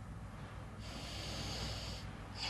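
A girl drawing a long, hissing breath in through the mouth, starting about a second in: a Quran reciter filling her lungs between phrases before the next long sung phrase.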